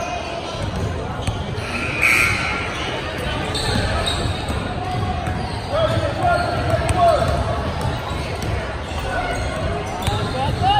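Basketball game in a gym: a ball bouncing on the hardwood floor amid indistinct shouting voices of players and spectators, all echoing in the large hall.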